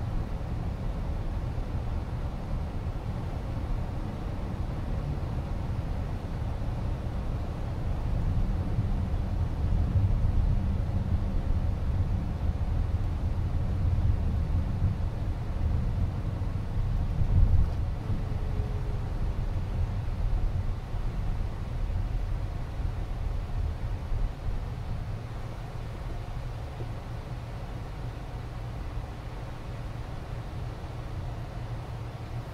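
Road and tyre noise inside the cabin of a Waymo Chrysler Pacifica minivan cruising at speed: a steady low rumble, a little louder around the middle and easing off in the last few seconds.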